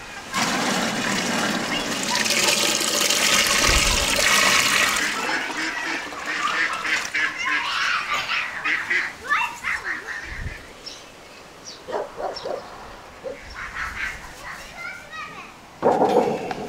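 Juice poured from a large aluminium pot into a galvanized metal tin: a heavy splashing stream for about five seconds, thinning to a trickle and drips by about ten seconds in.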